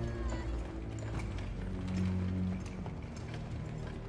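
Film-score music holding low, sustained notes, with a scatter of sharp knocks and clicks from the scene's sound effects.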